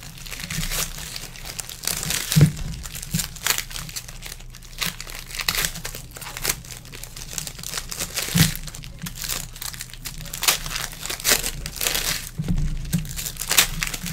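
Foil trading-card pack wrappers crinkling and tearing as packs are opened by hand, in irregular rustling crackles.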